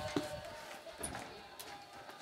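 Quiet room with a few faint, light clicks, one near the start and one about a second in.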